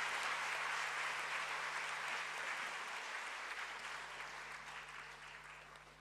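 Audience applauding, the clapping dying away gradually over the second half.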